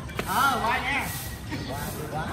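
A man calling out loudly in Thai during a badminton rally. Near the start there is a single light click of a racket hitting the shuttlecock.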